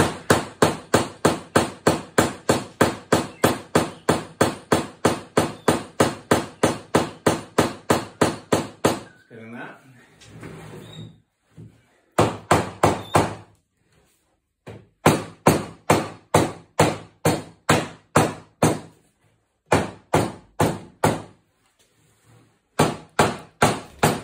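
Mallet blows on the oak back rail of a Victorian desk chair, driving it down onto freshly glued spindle joints. A fast, even run of about four blows a second lasts some nine seconds, then after a pause come several shorter bursts of blows.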